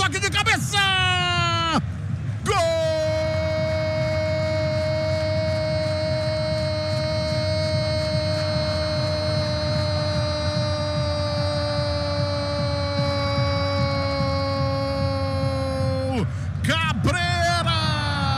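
A football narrator's goal cry: one long held shout of about thirteen seconds on a steady pitch that sags slightly near the end. Quick, excited play-by-play comes just before it and just after it.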